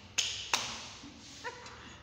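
Two sharp hand claps about a third of a second apart, each dying away quickly.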